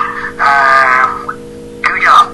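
Music with a voice holding a sung note, over a steady low electrical hum.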